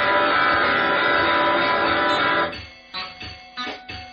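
Freely improvised electric guitar music: a loud, dense mass of held, layered tones cuts off suddenly about two and a half seconds in, leaving sparse, separate plucked guitar notes and clicks.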